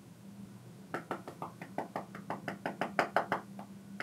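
Fingertips tapping on a smartphone touchscreen, keying numbers into a calculator app: a quick run of about fifteen light taps, around six a second, starting about a second in.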